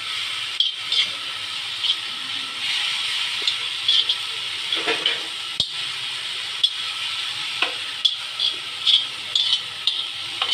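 Green chilli, garlic and coriander mash sizzling in oil in a hot pan, with a spatula scraping and stirring it against the pan now and then.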